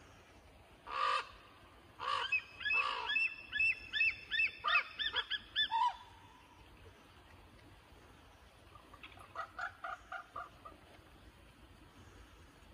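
Bird calls: three loud harsh calls in the first few seconds, then a rapid run of short rising-and-falling notes that stops about six seconds in, and a fainter run of similar notes from about nine to ten and a half seconds.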